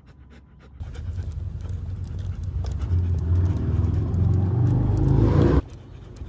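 Great Pyrenees panting over a low vehicle engine rumble. The rumble starts about a second in, grows louder and rises slightly in pitch, then cuts off abruptly near the end.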